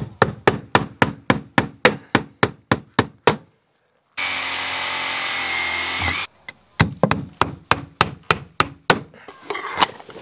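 Hammer driving galvanized nails into a concrete-siding window trim board, rapid blows about four a second. Midway a power drill runs steadily for about two seconds, pre-drilling the brittle board, and its whine drops as it stops. Then a second run of hammer blows follows.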